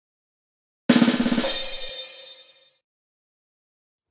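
A short drum-and-cymbal sound effect: rapid drum strokes with a cymbal crash about a second in, fading out over about two seconds.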